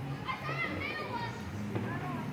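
Children's high-pitched voices calling and chattering, unclear as words, in the first half, over a steady low hum.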